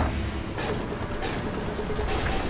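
Cinematic sound effect: a sudden low boom, then a steady rushing rumble of wind and blowing sand, with three swells of hiss.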